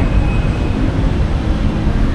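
Steady low rumbling background noise, even throughout, with no clear single event.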